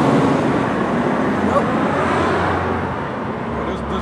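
Road traffic: a passing motor vehicle's engine and tyre noise, loud at first and fading gradually over a few seconds.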